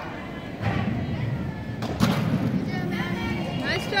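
Gymnast landing a balance-beam dismount on the mat: a single sharp thud about halfway through, over the steady murmur of voices in a large arena hall. A voice starts calling out near the end.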